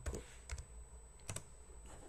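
Four short, sharp clicks of computer keys, unevenly spaced over two seconds.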